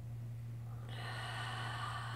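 A woman's long, deep breath out, starting about a second in, heard over a steady low hum.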